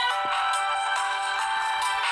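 Instrumental intro music of long held notes, with no speech.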